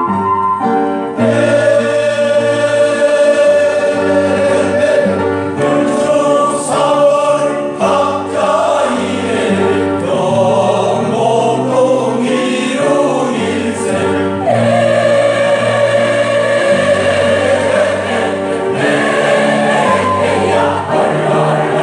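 Mixed senior choir of men's and women's voices singing in harmony. A piano passage plays for about the first second, then the choir comes in.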